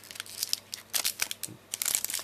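Foil Pokémon booster pack wrapper crinkling and crackling as hands work it open, in a run of irregular sharp crackles.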